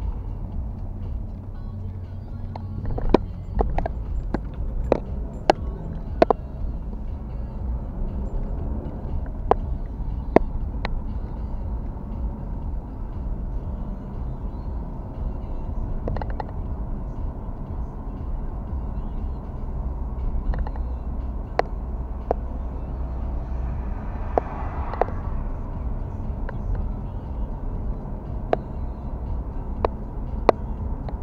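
Car cabin noise while driving on a wet street: a steady low rumble of engine and tyres, with scattered sharp clicks throughout.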